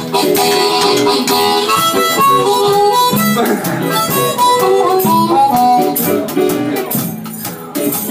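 Harmonica solo over a live blues band, a steady run of short notes, some of them bent in pitch.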